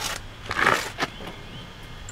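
Handling of a steel floor jack: a sharp knock, a short scrape about half a second later, and a click at about one second as the jack handle is taken up.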